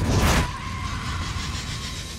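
Film-trailer sound effects: a whoosh in the first half-second, then a thin, steady high tone over a soft hiss that fades away.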